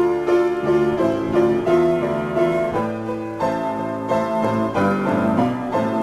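Solo piano improvisation: a steady run of single notes and chords struck every few tenths of a second and left to ring into one another.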